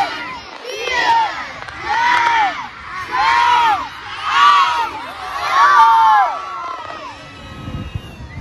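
A large crowd of spectators counting down in chorus, one shouted number about every second, the calls growing louder toward the last one about six seconds in. A low rushing noise comes in near the end as the hot-air balloon burners are lit.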